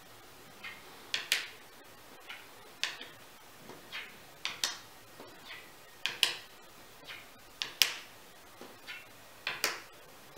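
Coloured game chips being set down one by one on a checkered game board, each placement a sharp click, often two in quick succession, roughly every second or so.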